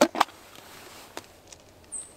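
Two sharp plastic clicks in quick succession from a small tub of Asiago cheese being opened, followed by a few faint ticks and a brief high squeak near the end as it is handled over the pizza.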